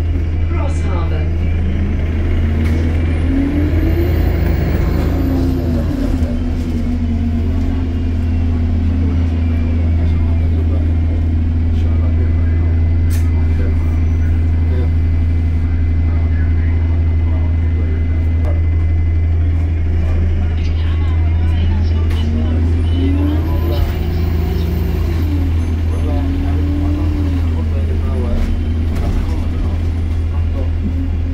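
An Alexander Dennis Enviro200 MMC bus's diesel engine and Voith automatic gearbox, heard from inside the passenger saloon, over a steady low drone. The bus pulls away twice: the engine note and a high transmission whine climb and then step down at the gear changes, with a steady cruise in between.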